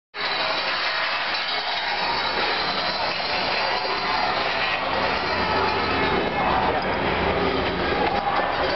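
Metal police barricades dragged across the street, a steady scraping and rattling clatter. It starts abruptly and runs loud and unbroken.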